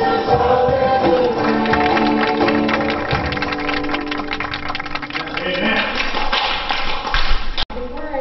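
Live worship song: an acoustic guitar strummed under voices singing, with sustained chords, cut off abruptly near the end.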